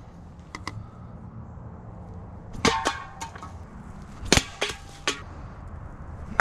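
Several sharp knocks and clanks, some with a brief metallic ring, the loudest about four seconds in: a no-spin thrown knife striking a metal can and pinning it to a wooden log.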